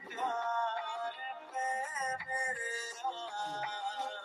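A Hindi pop song playing, with a processed vocal holding and sliding between long sung notes over a backing track.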